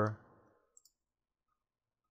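The tail of a spoken word, then a quick pair of faint computer mouse clicks a little under a second in, then near silence.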